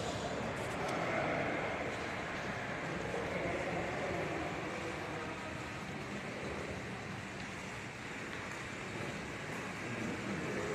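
Steady, even background noise of a large hard-floored hall as a group of people walks through it, with no clear voices.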